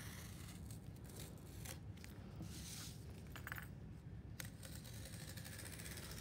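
An X-Acto craft knife scoring cardboard along a pencil line, cutting through the top layer only: faint, intermittent scratching.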